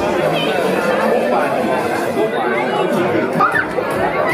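Crowd chatter: many voices talking over one another at once, with a few higher-pitched calls standing out.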